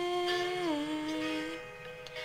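A girl's solo singing voice holding one long note, which steps down in pitch a little under a second in and fades near the end.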